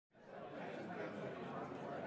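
Indistinct chatter of many voices in a large room, fairly faint, fading in at the very start.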